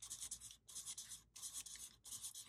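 Felt-tip marker scratching across brown paper in quick strokes as cursive letters are written, with two short breaks between runs.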